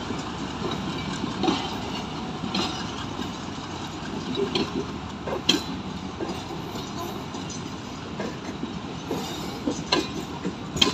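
Passenger coaches of Pakistan Railways' 34 Down Business Express rolling past as the train departs. A steady rumble of steel wheels on track is broken by occasional sharp clicks and clanks.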